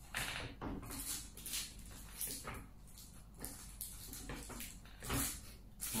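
Scattered clicks, knocks and rubbing of hard plastic cordless-vacuum parts being handled and fitted together, loudest about five seconds in.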